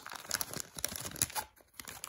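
Wax paper card-pack wrapper crinkling and crackling as it is unfolded and pulled open, stopping about a second and a half in.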